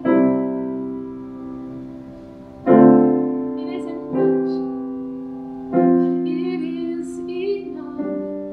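Steinway grand piano playing slow sustained chords, one struck about every one and a half seconds, each ringing and fading before the next.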